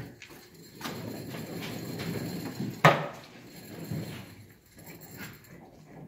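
Rattling clatter of a metal roller conveyor, with one sharp knock about three seconds in.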